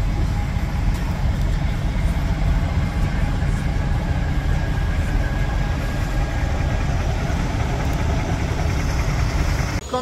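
Steady low vehicle rumble heard from inside a car's cabin.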